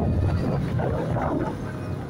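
Motorcycle riding on a rough dirt road: a low engine rumble mixed with wind buffeting the microphone, starting abruptly.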